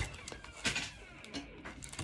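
Soft handling of trading cards on a desk: light rustling with a few small clicks and taps, one of them about two-thirds of a second in.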